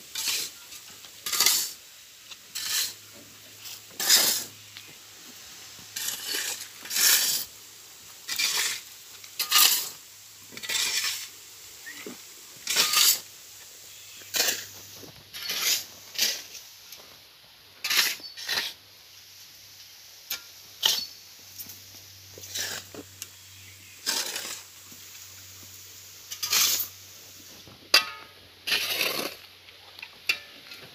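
Steel shovel blades scraping and scooping through a dry sand-and-cement pile on hard ground, one scrape about every second in a steady rhythm: the dry mix being turned over by hand.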